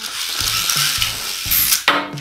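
A motorcycle-shaped spinning-top toy's wheel top whirring with a steady hiss, then a sharp plastic click and rattle near the end.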